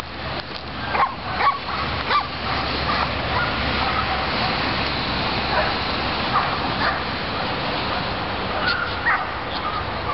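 A dog barking in short yips: a few about a second in and again near the end, over steady background noise.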